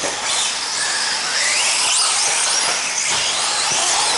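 Electric motors of radio-controlled 4WD off-road buggies whining on the track, several pitches overlapping and sliding up and down as the cars speed up and slow down.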